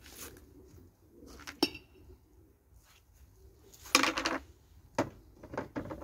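Clinks and clatter of glass and containers being handled: a sharp clink about one and a half seconds in, a louder clatter about four seconds in, and another click near the end. Pigeons coo faintly underneath.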